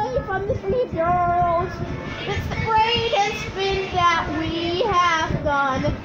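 Children's voices singing a cartoon song, heard off a TV speaker: several sung phrases with long held notes, some with a wavering pitch.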